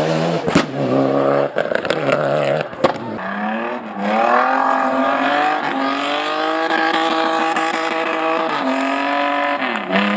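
Hillclimb race car engines at full throttle. A first car runs at high revs with several sharp cracks and fades about three seconds in; then a second car's engine revs up and holds high revs as it climbs, its pitch stepping at gear changes.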